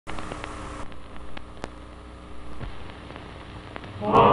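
Surface noise of an old film soundtrack: a steady hiss and low hum, broken by scattered clicks and pops.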